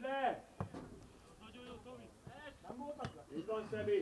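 A football is kicked twice, two sharp thuds about two and a half seconds apart, while players' voices call out on the pitch.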